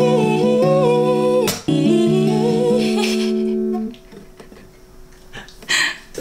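Acoustic guitar chords strummed and left ringing under a wordless hummed vocal melody; the last chord fades out about four seconds in, and a short burst of voice follows near the end.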